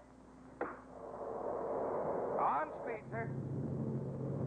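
Spaceship rocket-engine sound effect as the ship goes to full space speed: a rushing roar swells up over the first two seconds. A low steady hum sets in near the end.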